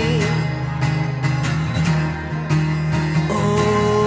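Acoustic guitar strummed in a steady rhythm, played live as a solo accompaniment.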